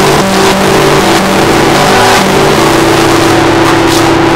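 Steel-string acoustic guitar played loudly and picked up with heavy distortion: a run of changing notes, then a chord held ringing from about two and a half seconds in.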